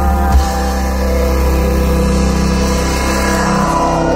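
Live psychedelic space-rock band playing loudly: long-held keyboard chords over a deep, steady bass.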